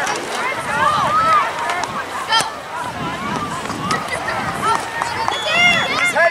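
Overlapping shouted calls from young players and adults on the sideline during a youth soccer match, rising and falling throughout but with no clear words.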